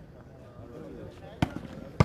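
A volleyball struck hard by hand during a rally: one sharp slap about a second and a half in and another at the very end, over a low background murmur.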